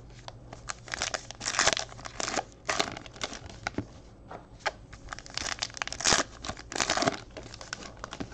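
Trading-card pack wrappers crinkling and tearing as packs are opened and cards handled by hand, in a series of short, uneven crackly bursts.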